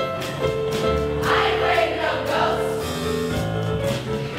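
A choir singing over instrumental accompaniment with a steady beat.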